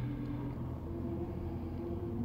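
A steady low hum with a few faint steady tones above it: indoor background noise with no distinct event.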